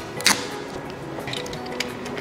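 Soft background music, with a couple of brief rasps of fibre tape being pulled off its roll and wrapped around a battery pack.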